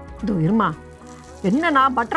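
A woman speaking over the faint sizzle of butter melting on a hot non-stick tava.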